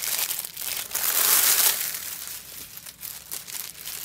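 Clear plastic bag crinkling as a rolled canvas is slid out of it. The crinkling is loudest for the first couple of seconds, then settles into quieter rustles and small clicks.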